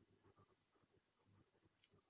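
Near silence: a pause in the talk with only faint room tone.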